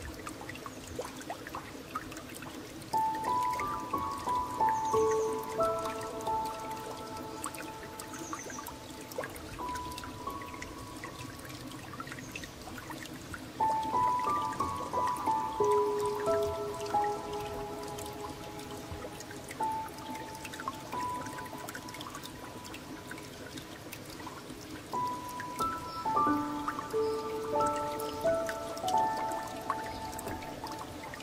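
Slow, gentle solo piano playing unhurried phrases that swell in three waves, over a steady bed of flowing, trickling water. A few faint high bird chirps come through in the first half.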